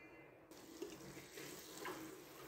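Beef curry masala frying in a pressure-cooker pot: a faint, steady sizzle that starts about half a second in, with a few light scrapes of a wooden spatula stirring it.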